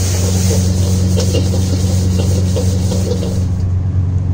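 High-pressure gas wok burner burning at full flame under a wok, a loud steady low rumble.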